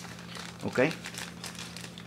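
Clear plastic bag crinkling in irregular little crackles as hands handle the modem sealed inside it.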